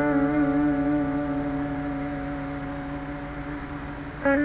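An amplified electric guitar chord held and left ringing, slowly fading, with a slight waver in pitch in the first second.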